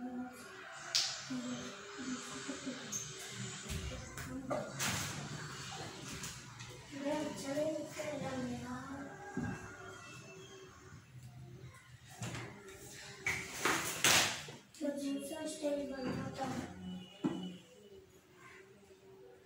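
Young children's voices talking and playing, with rustling and a few sharp bumps as blankets and cushions are handled, the loudest near the middle and a few seconds before the end.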